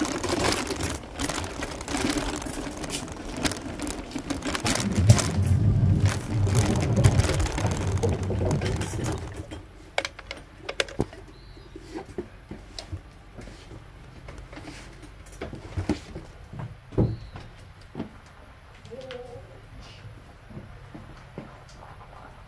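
Wheelchair rolling over a rough path, a loud rattling rumble with a pulsing low throb, which drops away about nine seconds in. Then quiet outdoor ambience with scattered sharp clicks and a short soft bird call near the end.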